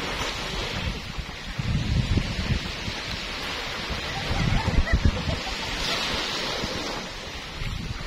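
Small waves breaking and washing up on a sandy shore, with wind gusting across the microphone in low rumbling buffets.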